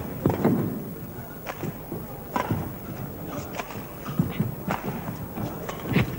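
Badminton rally: rackets striking the shuttlecock with sharp cracks about once a second, mixed with the thud of players' footsteps and lunges on the court, over a steady hall background.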